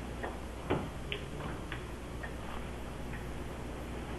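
Quiet room tone: a steady low hum with a handful of faint, irregular ticks and small knocks, the clearest about three-quarters of a second in.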